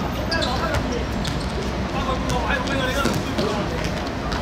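Players' voices calling out across a football pitch, with a few short sharp thuds of the ball on the hard playing surface, over a steady low background rumble.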